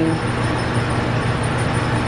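Steady low mechanical hum with a constant hiss over it, unchanging throughout.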